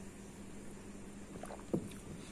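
Faint steady background hum, with a single short low knock near the end as an emptied drinking glass is set back down on the table.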